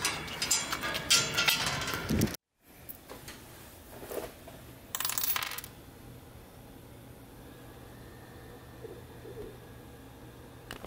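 Clattering handling noise that cuts off suddenly after about two seconds. Then small metal camera-strap triangle rings clink on a wooden table, a soft clink about four seconds in and a brighter half-second jingle about five seconds in, over a low room hum.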